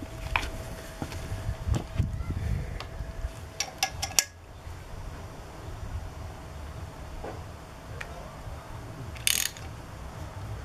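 Ratchet spanner clicking and metal knocking as the bolt of a homemade puller is wound tighter against a Villiers 11e Dynastart still stuck fast on its crankshaft taper. There is a cluster of clicks ending in a sharp knock about four seconds in, then a short burst of clicks near the end.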